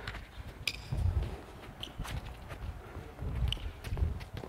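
Soft, irregular thuds of a football being dribbled and feet running on artificial turf, loudest about a second in and again a little past three seconds.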